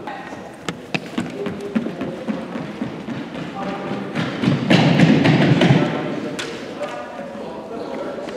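Echoing thumps and taps on a sports-hall floor amid people's voices, with the voices louder from about four and a half to six seconds in.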